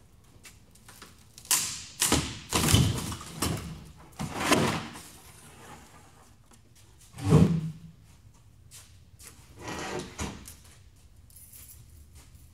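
Thin plywood sheets being handled: a run of knocks and scraping slides over the first few seconds, a heavy thud a little past halfway, and another scrape near the end.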